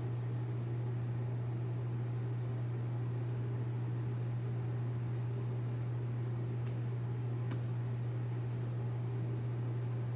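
Steady low mechanical hum with an even hiss from a running appliance, with a few faint clicks between about seven and eight seconds in.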